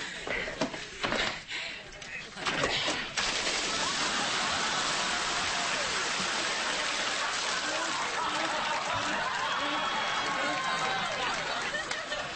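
Water pouring down onto a person in a steady, heavy splashing rush that starts about three seconds in.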